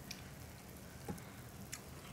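Chopsticks working wide starch noodles in a bowl of dipping sauce: a few faint clicks and soft squishes over the low steady hiss of the simmering hot pot.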